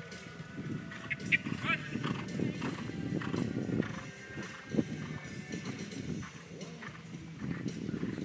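Hoofbeats of a horse cantering and jumping on sand arena footing, with a few louder thuds among them.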